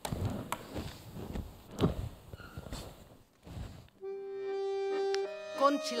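A few seconds of rustling and soft knocks, then an accordion starts about four seconds in: it holds one long note and then moves through changing notes as a song begins.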